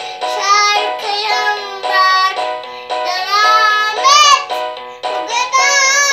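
A small child singing in short high phrases into a toy microphone, over a simple electronic melody of held, stepping notes.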